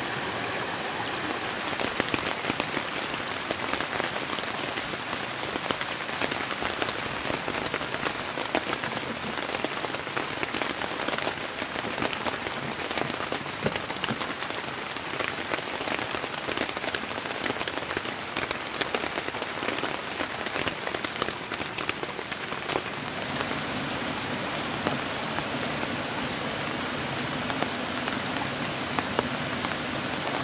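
Steady rain falling, with many separate drops ticking on nearby surfaces; the hiss turns a little brighter about two-thirds of the way through.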